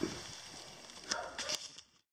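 Quiet outdoor background with a few faint rustles and short clicks, the sort of handling noise a gloved hand and dry leaves make. It fades out to silence at the very end.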